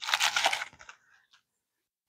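Clear plastic packaging crinkling and rustling as it is handled, for just under a second, then silence.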